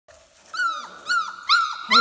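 Four-week-old puppy whining: four short, high cries about two a second, each falling in pitch, starting about half a second in.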